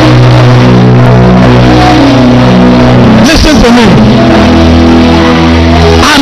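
Loud church keyboard music holding sustained organ-like chords that change every second or so over a steady bass note, with a voice breaking in briefly about halfway through.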